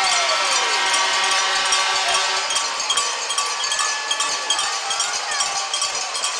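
Hockey arena noise just after a goal: crowd noise with several steady ringing tones held over it, strongest at first and fading through the second half.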